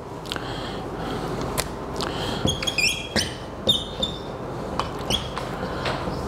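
Whiteboard marker squeaking across a whiteboard in short strokes while writing, most plainly about two to four seconds in, after a brief wipe of the board with an eraser near the start. A few light taps sound between the strokes.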